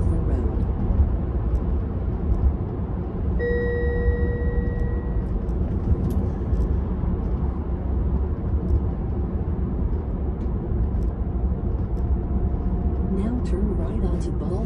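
Road and tyre noise inside a Tesla Model 3's cabin, a steady low rumble as the electric car drives along. About three and a half seconds in, a single electronic chime tone holds for nearly two seconds.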